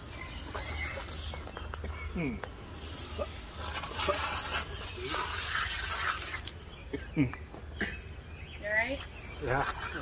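Garden hose spray nozzle spraying water over a person's head and face, a steady hiss of spray and splashing that breaks off twice. The water is flushing pepper spray out of the eyes. A few short grunts and murmurs come in between.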